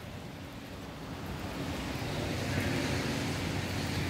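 A vehicle passing on a rain-soaked road, its tyre hiss on the wet surface growing steadily louder as it approaches.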